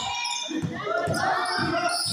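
Basketball bouncing on a concrete court in a run of short low thuds, over players' and onlookers' voices.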